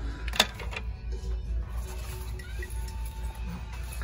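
Background music over a steady low hum, with a sharp knock about half a second in and a lighter one just after, as tennis rackets are handled on a wire shelf rack.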